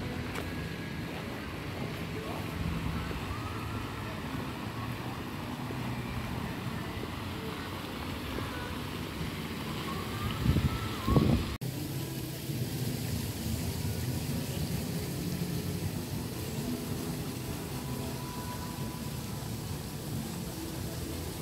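Outdoor ambience picked up by a smartphone's microphone: a steady low rumbling noise with wind buffeting the mic. The loudest gust comes about ten to eleven seconds in. Just before twelve seconds the sound changes suddenly at a cut.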